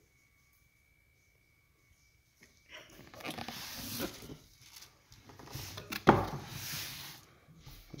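A cardboard shoebox being handled and opened, starting about three seconds in, with the wrapping paper inside rustling and crinkling. One sharp knock about six seconds in.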